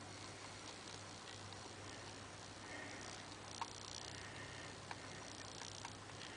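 Lock pick working the pins of a five-pin brass rim cylinder: a handful of faint, sparse ticks, the clearest a little past halfway, over a faint steady hum.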